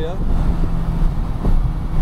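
Porsche GT3's flat-six engine heard from inside the cabin at light throttle and low speed, a steady low drone mixed with road and wind noise.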